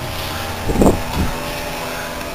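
Steady background machine hum made of several level tones, like a fan or motor running, with a brief vocal sound about a second in.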